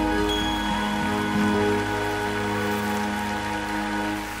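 Live orchestra with violins holding a long sustained closing chord, with a haze of audience applause rising over it.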